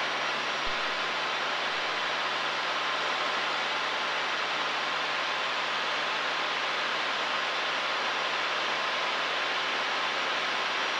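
Steady cabin noise of a Cessna 172 in flight: engine and propeller drone mixed with airflow, an even rushing hiss with a faint low hum and no change.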